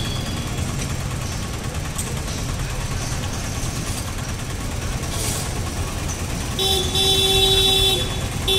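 Road traffic: a steady low rumble of passing engines, then a vehicle horn held for about a second and a half near the end.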